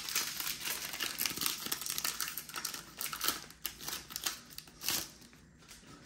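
Foil wrapper of a Pokémon trading card booster pack crinkling and tearing as it is opened by hand: a dense run of small crackles that dies down about five seconds in.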